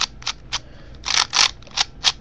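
Layers of a plastic cuboid twisty puzzle being turned by hand: a run of clicks and short scrapes, with a couple of longer scrapes a little past the middle.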